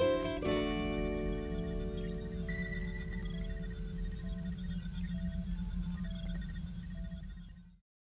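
Closing chord of an acoustic guitar and a ukulele, struck once and left ringing as it slowly fades, over a steady low hum with faint short tones about once a second. The sound cuts off suddenly just before the end.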